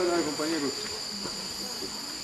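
Steady high-pitched drone of tropical forest insects, two constant shrill tones held without a break, with faint voices of people talking near the start.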